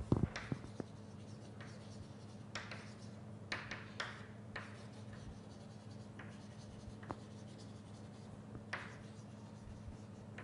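Chalk writing on a blackboard: irregular short scratches and taps a few times a second, with a faint steady room hum underneath.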